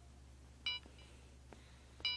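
Sony digital camera's button beep: one short electronic beep about two-thirds of a second in, as a button is pressed to step to the next photo in playback, with a faint button click about a second later.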